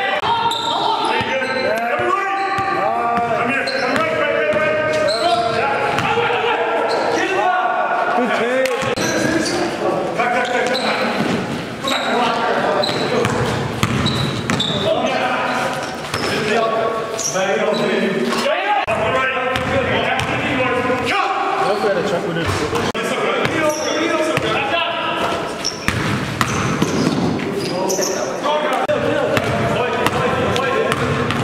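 Live basketball game sound in a gym hall: the ball bouncing on the court, sneakers squeaking and players' voices calling out, all echoing in the large room.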